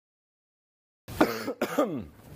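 After dead silence for the first half, a man coughs about three times in quick succession.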